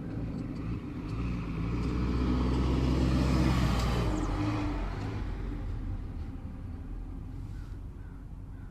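A road vehicle passing by: engine rumble and tyre noise swell to their loudest about three seconds in, then fade away.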